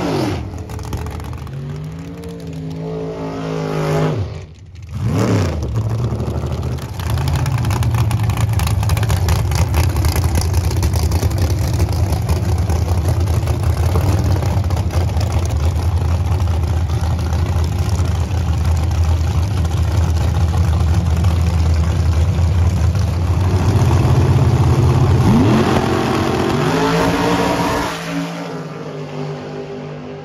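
A gasser drag car's engine. Its revs fall off at the end of a burnout, it gives a quick rev a few seconds in, then it holds a long, loud, steady rumble while staging. Near the end it revs up sharply and fades away quickly as the car launches down the strip.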